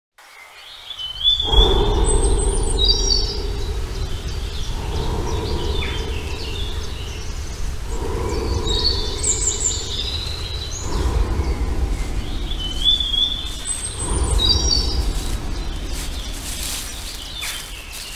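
Birds chirping in short repeated phrases over a steady low outdoor rumble that swells and eases several times.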